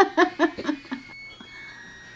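A woman laughing: a quick run of high 'ha-ha' bursts in the first second that trails off into quiet.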